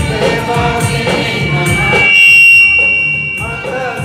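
A church choir of women's and men's voices singing a hymn into microphones. About two seconds in the singing breaks off for about a second while a loud, steady high-pitched tone sounds, the loudest thing here; the singing comes back shortly before the end.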